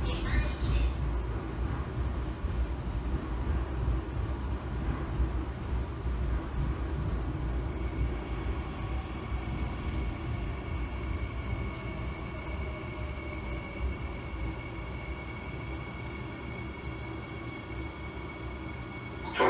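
Seoul Metro Line 3 subway car heard from inside: a steady low rumble of the train running on the track that slowly grows quieter. In the middle a faint whine slides down in pitch, and a thin steady high tone sets in about halfway, as the train slows.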